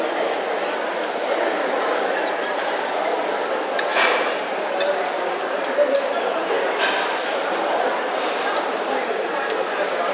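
Metal fork and spoon clinking against a plate of fried noodles a few times, the sharpest clinks about four and seven seconds in, over steady background chatter of a crowded food court.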